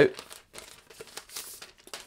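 Clear plastic wrap crinkling and rustling as it is pulled off a trackpad. It is loudest about a second and a half in.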